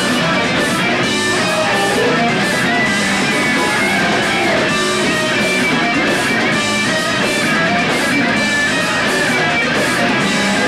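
Live rock band playing loud and without a break: electric guitars over bass and drums.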